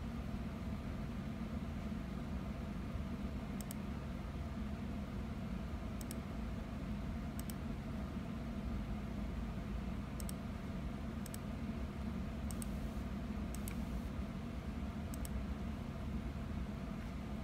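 Steady low hum of a running computer's fans, with faint sharp clicks scattered every one to two seconds.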